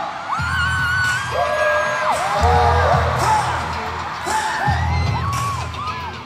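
Live pop music played loud through an arena sound system: heavy bass pulses in blocks of about a second under a high melody that holds long notes and slides between them.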